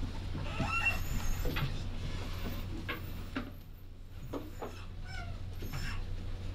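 Meeting-room background noise: a steady low electrical hum with faint scattered knocks and shuffles, and a few brief high squeaks about a second in and again near the end.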